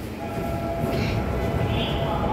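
Door-closing warning tone in a Seoul Metro Line 3 subway car: a steady electronic tone starts a moment in and holds, over the low rumble of the car, as the doors are about to shut.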